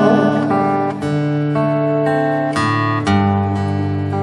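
Acoustic guitar playing alone, strummed chords left to ring, with a new chord struck about four times.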